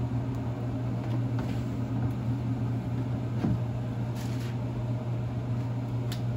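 Steady low machine hum, like a fan or motor running. A brief light clatter comes about four seconds in.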